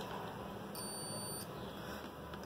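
A digital multimeter's continuity buzzer gives one short, steady, high beep about a second in, the signal that the probes are across a closed circuit.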